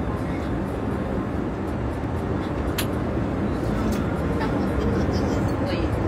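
Steady low cabin drone inside a private jet, engine and air noise running evenly throughout.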